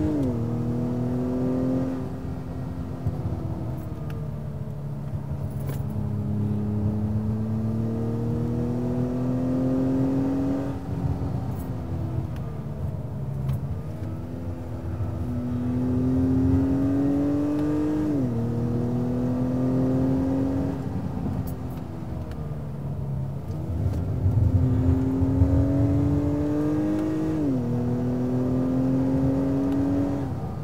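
2021 Acura TLX A-Spec's 2.0-litre turbocharged four-cylinder engine, heard in the cabin, pulling hard through the gears. The pitch climbs steadily and drops sharply at an upshift three times, with two stretches where it sags off-throttle before climbing again.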